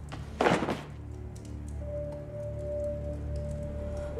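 A heavy thud about half a second in, a body dropping onto a stone floor, followed by slow film score with long held notes.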